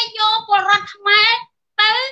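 Speech in a high-pitched voice, in short phrases with brief pauses.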